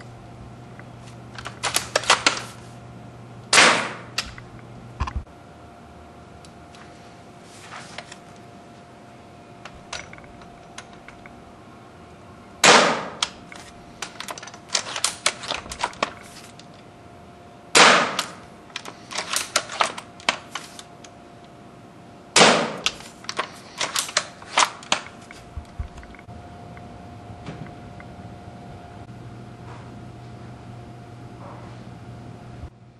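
UTG Type 96 spring-powered bolt-action airsoft sniper rifle fired four times through a chronograph, each shot a sharp crack. Between shots come bursts of quick mechanical clicks from the bolt being cycled to re-cock the spring.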